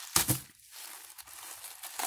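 Black tissue paper crinkling and rustling as hands turn over a tissue-wrapped package, with a louder burst of crinkling just after the start.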